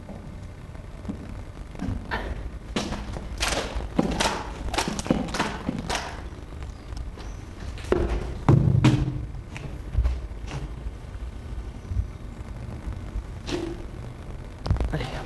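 Footsteps on loose wooden pallets laid over rubble: a run of separate knocks and thuds, the loudest a heavy thud a little over halfway through, with another knock near the end.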